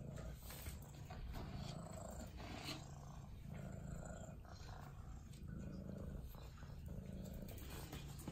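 Domestic cat purring, a low steady purr that comes in stretches of a second or so, broken briefly with each breath.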